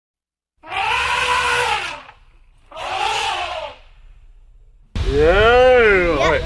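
Elephant trumpeting sound effect: two loud blaring calls, the first about a second and a half long, the second shorter, a moment later. Near the end a person's voice calls out loudly.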